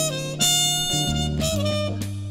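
Instrumental 1970s jazz-fusion: a band with bass and drums, a lead instrument holding long notes over a steady bass line, with drum hits at the start and about half a second in.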